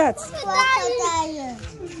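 A young child's voice, one drawn-out utterance that slides down in pitch.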